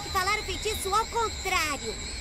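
High-pitched girls' voices in quick short syllables over a steady faint background hum and tones.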